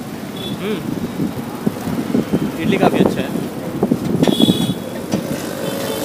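Road traffic on a busy city street, with people talking close by; a brief high-pitched sound cuts through about four seconds in.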